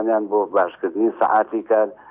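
Speech only: a man talking steadily into microphones.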